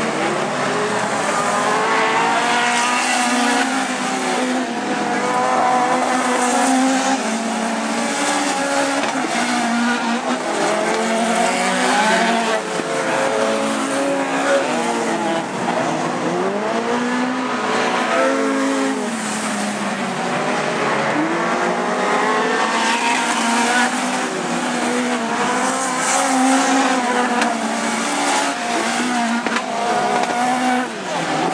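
Several four-cylinder dirt-track race cars racing as a pack. Their engines overlap, each one rising and falling in pitch as it revs up and lifts off through the bends.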